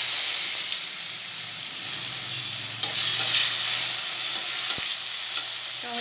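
Chopped tomatoes sizzling in hot oil in a kadai, a loud steady sizzle that eases slightly after about a second. A few light taps and scrapes of a spatula come through as they are stirred.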